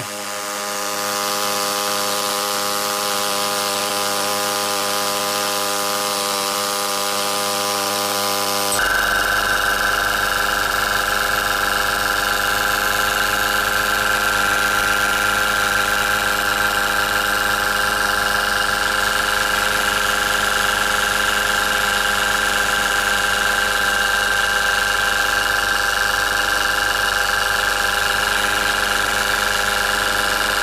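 Peake Engines Nano, a tiny brass steam engine running on compressed air at about 2.5 bar, turning fast and steadily with a buzzing note and a hiss of air. About nine seconds in the sound changes abruptly: a low hum and a higher steady tone join in.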